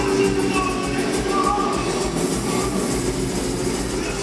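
A rock band playing live and loud: distorted electric guitars and a drum kit.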